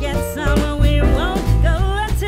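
Background music with a wavering lead melody over a bass line and a steady beat.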